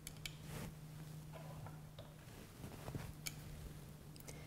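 Faint handling noise from a dissection: a few small, scattered clicks and ticks as hands handle the kidney and metal dissecting scissors in the tray, over a low steady hum.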